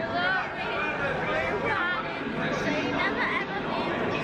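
People talking and chattering in a large, echoing railway station, with voices overlapping throughout.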